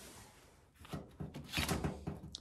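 Handling noise from an unconnected starter cable being pulled free by hand where it was jammed against the frame: rustling and a few light knocks, starting about a second in.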